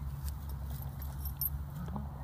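Metal links of a dog's chain collar jingling lightly in scattered clicks as the dog moves about in the grass, over a steady low rumble on the microphone.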